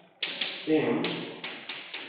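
Chalk tapping on a chalkboard while writing, a run of short sharp taps, with a man's voice saying a word partway through.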